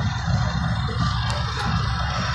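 Arcade ambience: music from the game machines over a steady low hum of the room.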